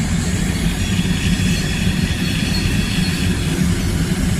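Freight train rolling slowly past with a steady low rumble from its wagons. Its wheels are throwing sparks, and a faint high squeal comes in about a second in and fades near the end.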